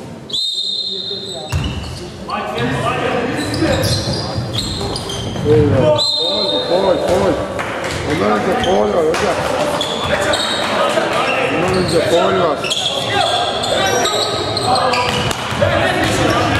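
Basketball game in an indoor gym: a basketball bouncing on the hardwood court, with players' voices calling out.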